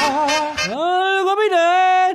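Male voice singing with a band: a short line sung with wide vibrato, then the voice slides up into a long held high note as the band drops out underneath.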